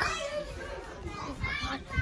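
Children's voices in the background as they play: one voice trails off at the start and fainter talk follows about one and a half seconds in, with low rumbling handling noise underneath.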